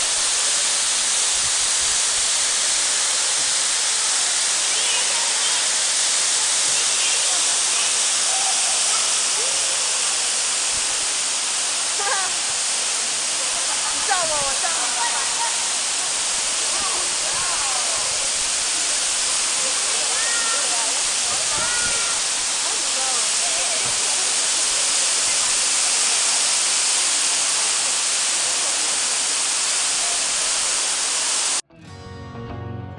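Tall indoor waterfall pouring down a plant-covered artificial mountain: a steady, even rushing noise. Faint voices of people talk over it now and then.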